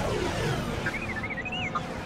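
R2-D2's electronic warbling whistles, a quick run of rising and falling chirps about a second in, over orchestral music and space-battle sound.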